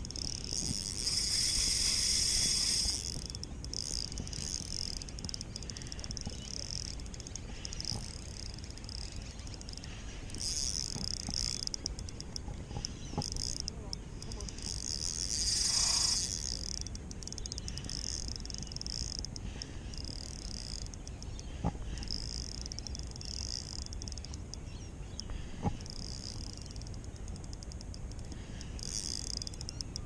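Spinning reel's drag buzzing in bursts as a hooked Australian salmon pulls line. The longest run comes about a second in, another strong one around the middle, and shorter ones between, with a couple of sharp clicks.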